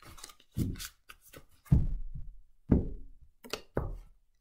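A deck of tarot cards handled on a cloth-covered table: about five soft thuds at irregular intervals as the deck is knocked down and cards are put on the table, with light card rustling between.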